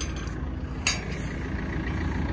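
An engine idling steadily with a low hum, and a single sharp metal clank a little under a second in from the steel gate's spring-bolt latch.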